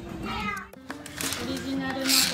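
A young child's short, high, whiny cry, bending down and back up in pitch. Then light background music begins about three-quarters of a second in.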